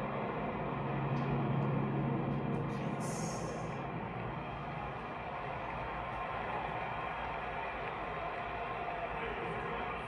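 Roar of military jets on a televised stadium flyover, heard through a TV's speakers. It is a dense, steady rumble, with a low held tone in the first couple of seconds.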